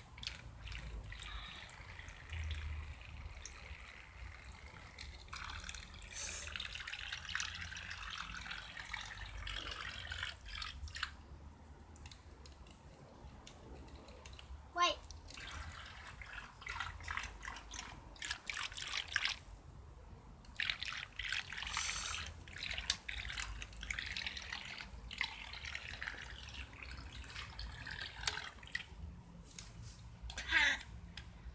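Water splashing and trickling in a paddling pool, stirred by small toy boats moving on it, in irregular small splashes and drips. A brief voice sounds about fifteen seconds in.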